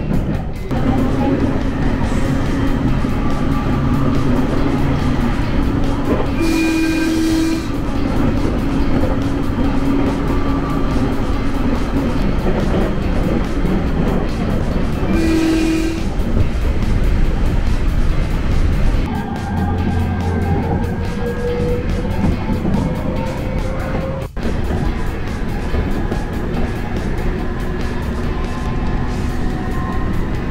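Electric local train running, heard from inside the carriage: a steady rumble from the wheels and running gear, under background music.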